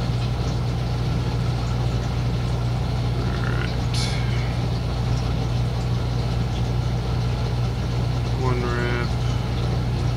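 Steady low mechanical hum, unchanging in level, with a short click about four seconds in and a brief rising pitched sound near the end.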